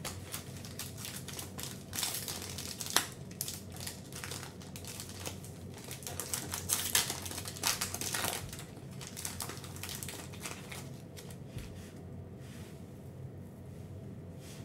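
A Panini Revolution basketball card pack's wrapper being torn open and crinkled by hand, an irregular crackling with one sharp snap about three seconds in. The crinkling is loudest a little past the middle and dies down over the last few seconds as the cards come out.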